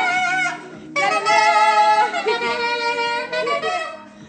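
A saxophone playing a melody in long held notes, with a short break just before a second in, heard through a phone's live-stream recording.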